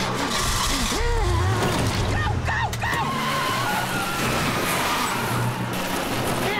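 A cartoon golf cart's motor running steadily with skidding tyres, mixed with a woman's wordless yells and shrieks as she chases and hangs onto the cart.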